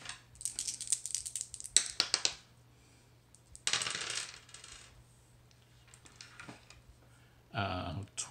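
Three six-sided dice rattled and thrown, clattering with a quick run of sharp clicks for about two seconds, then a shorter rattle a couple of seconds later.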